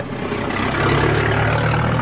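A motor vehicle's engine running steadily: a low hum under a wash of noise.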